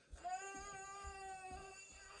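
A toddler's long, whiny cry held on one steady pitch for most of two seconds, with a few faint soft knocks underneath.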